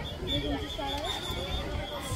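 Voices calling and shouting at a kho kho match, over a steady high tone held for about a second and a half from the start.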